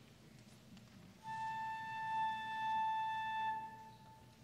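Concert flute playing one long held note, coming in about a second in, swelling slightly and fading out near the end.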